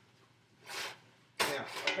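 A man's breath sounds: a short sniff a little under a second in, then a sudden short cough just before he starts to speak.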